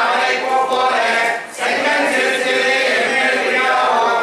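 A congregation chanting devotional verses in unison, many voices together on a steady chant, pausing briefly for breath about a second and a half in before starting the next line.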